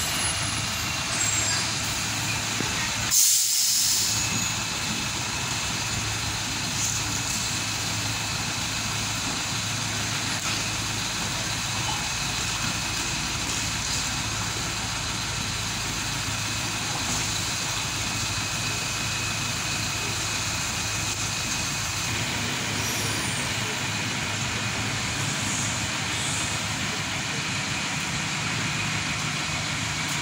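A bus's diesel engine idling steadily, with one loud, sharp hiss of its air brakes about three seconds in as it comes to a stop.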